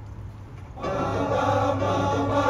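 Choir of young men singing: after a brief hush, a held chord comes in a little under a second in and stays steady.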